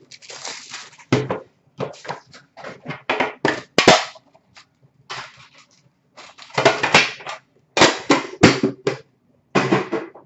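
Hockey card pack wrappers crinkling and tearing as packs are handled and ripped open, in irregular bursts of rustling with a couple of sharp clicks.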